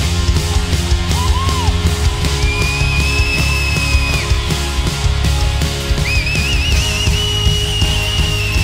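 Live worship band playing an instrumental passage: a steady drum beat and bass under a high lead line that holds two long notes, the second starting with a quick wavering.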